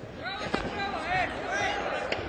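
High-pitched shouting voices rising and falling in pitch, cheering on a judo exchange, with a single thump on the mat about half a second in.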